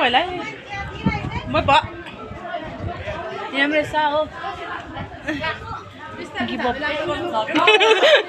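People's voices talking and chattering.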